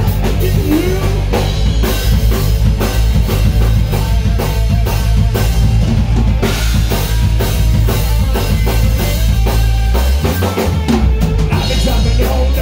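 Live rock band playing a song, the drum kit to the fore with bass drum and snare hits, over electric bass and electric guitar. The bass drops out briefly about ten seconds in.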